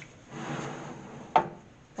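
A baking tray sliding and scraping into an oven's shelf runners, then a single sharp knock as it seats.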